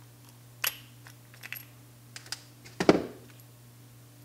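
Small metallic clicks and ticks of needle-nose pliers working the hinge pin and float of an SU carburetor's float-chamber lid. A louder metal clunk comes near three seconds in as a part meets the metal tray.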